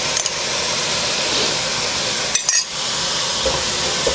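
Diced onion and celery sizzling steadily in a hot non-stick pot as freshly added stock deglazes the bottom, with a brief clatter about two and a half seconds in.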